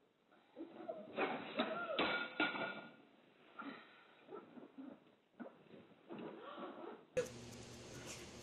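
Indistinct voices in a room heard through a home security camera's narrow-band microphone, with two sharp knocks about two seconds in. Near the end a steady hum begins.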